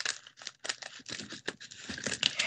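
A stiff placemat crinkling and rustling in quick, irregular crackles as it is folded by hand around a foam hat form.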